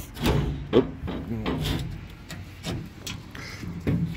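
A few light knocks and rubbing or scraping sounds, at an uneven pace, with a brief mumble of voice.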